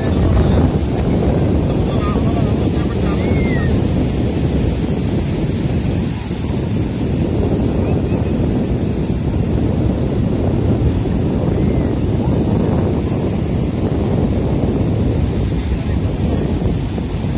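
Steady wind rumble on the microphone over the wash of waves breaking on a sandy beach, with faint distant voices.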